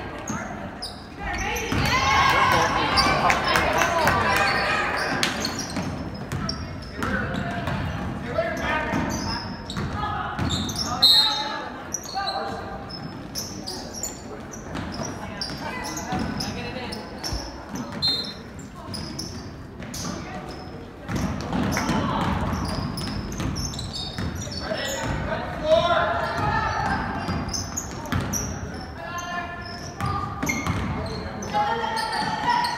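Voices of spectators and players in a gymnasium, with a basketball bouncing on the hardwood court and short sharp strikes through the play.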